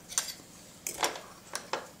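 A person chewing a bite of vegan burger: a few faint, short clicks and crunches, about three over two seconds.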